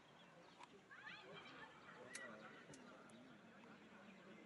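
Faint, distant shouts and calls of players and onlookers at an outdoor football match, with a few light ticks about two and three seconds in.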